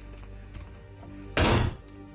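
A door shut hard: one loud thud about one and a half seconds in, over quiet background music.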